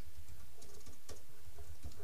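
Typing on a computer keyboard: a quick run of light key clicks.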